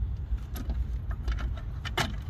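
Light metallic clicks and clinks of tools and engine parts being handled on a partly dismantled car engine's cylinder head, a few at a time, over a low steady rumble.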